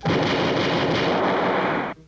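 Cartoon gunfire sound effect of two revolvers being emptied: the shots run together into one dense, loud burst about two seconds long that cuts off suddenly.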